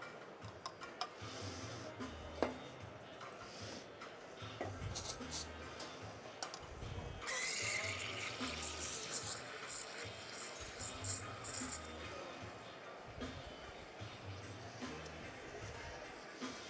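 Background music with a steady beat. From about seven seconds in, an espresso machine's steam wand hisses for about five seconds as milk is steamed in a pitcher, a faint squealing tone running through the hiss.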